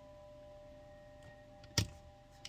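A single sharp tap about two seconds in, a tarot card being set down on the tabletop, over a faint steady electrical whine of a few tones.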